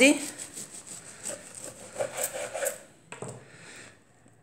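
A knife sawing through the crisp, sugar-dusted crust of a freshly baked croissant on a wooden cutting board: a crackly rasping that stops about three seconds in, followed by a single light knock.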